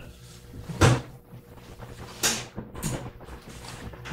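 A short knock about a second in, then a few lighter clicks a little later, over faint room hum.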